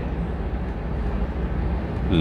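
Steady background hum and hiss, even throughout, with no distinct sounds standing out.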